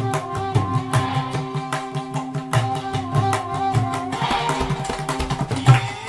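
Tabla played with both hands in quick strokes over a recorded melodic backing track of the song, whose sustained tones run beneath the drumming.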